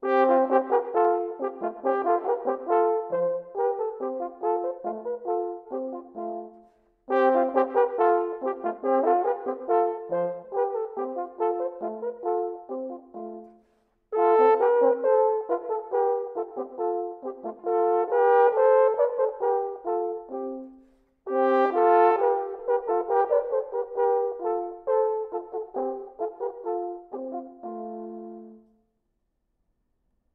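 A pair of valveless Baroque natural horns by Hofmaster playing a two-part duet. The music comes in four phrases with short breaks between them and stops just before the end.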